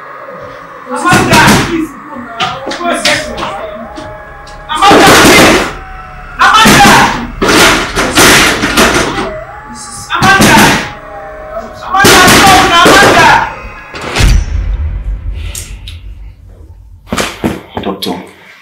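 A head repeatedly banging against a wall: a series of heavy knocks, unevenly spaced roughly every one to two seconds, each with a short smear of ringing.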